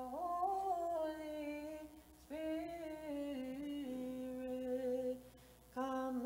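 A woman's voice chanting an Orthodox church hymn solo and unaccompanied. The chant moves in long held notes that step up and down in pitch, drawn out over single syllables, in phrases with short breaths between them.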